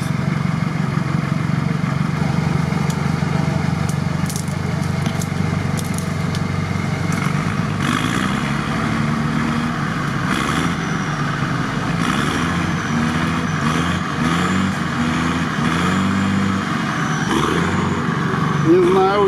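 Heavy off-road truck engines running under load as a GAZ-63 pulls by cable on a stuck Unimog. The engine note is steady at first; from about eight seconds in, the revs climb and fall repeatedly over a louder rushing noise.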